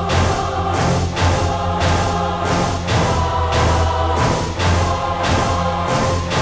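Dramatic background music: choir-like voices holding long notes over a low drone, with a steady beat of about two strikes a second.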